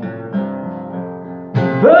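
Acoustic guitar strummed, its chords ringing, with a fresh strum about a third of a second in and a louder one near the end as a man's singing voice comes in.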